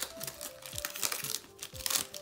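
Foil booster-pack wrapper crinkling in the hands as it is opened, in many short crackles, over steady background music.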